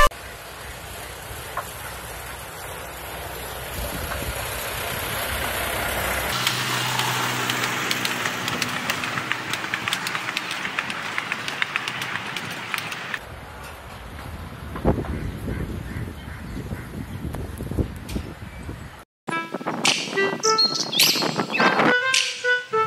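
Small ride-on toy train running past on its track: a steady rolling noise heard in a few short clips, each cut off abruptly, loudest in the middle. Music comes in near the end.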